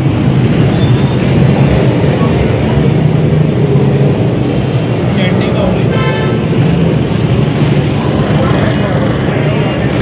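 Loud, steady street noise: a low rumble of traffic with indistinct crowd chatter over it.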